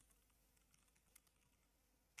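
Near silence, with a few faint computer keyboard keystroke clicks, the clearest a little over a second in.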